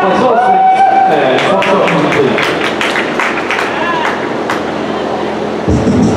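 People talking in a large, echoing gymnasium, with scattered sharp clicks, then foxtrot dance music starts suddenly over the hall's sound system near the end.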